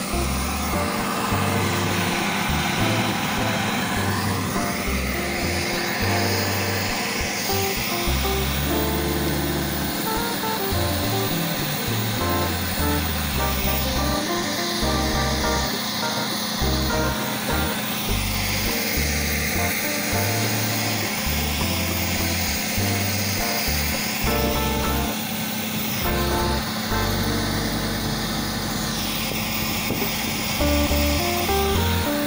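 Background music with a shifting bass line and a steady drone.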